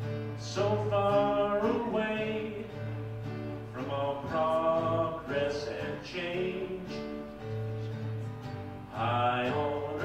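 A slow country song on strummed acoustic guitar, with a man singing over it.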